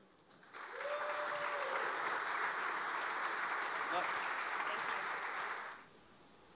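An audience applauding, a steady clapping that starts about half a second in and stops shortly before the end.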